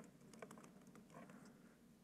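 Faint, irregular clicks of typing on a computer keyboard, a few scattered keystrokes.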